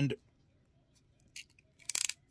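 Hand crimping tool closing its die on a tiny Molex-style wire terminal: a faint click, then a quick cluster of sharp metallic clicks near the end as the jaws come together and crimp the terminal.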